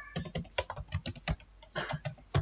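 Typing on a computer keyboard: a quick, irregular run of keystrokes as an email address is entered.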